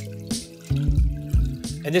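Water pouring from a glass measuring cup into a pan of oil-fried tomato paste, under background music with a low, steady beat.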